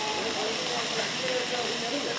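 Two domestic cats in a standoff. One cat gives a faint, low growling yowl in a couple of drawn-out notes, with hissing throughout.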